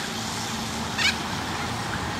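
Outdoor street ambience: steady noise with a low, steady hum, and a single short bird call about a second in.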